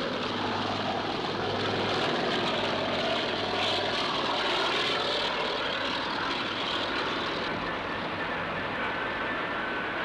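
Helicopter's turbine engine and rotor running steadily with a low hum as it lifts off a helideck and flies off, the sound easing a little after about seven seconds.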